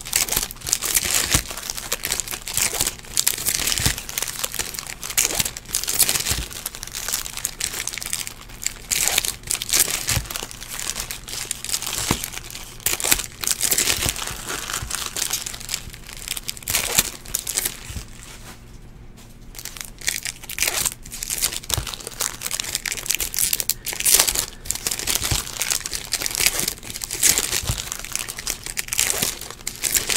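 Trading card packs being opened and handled: pack wrappers crinkling and tearing while cards are shuffled and tapped together, a steady run of quick rustles and clicks with a short lull a little past halfway.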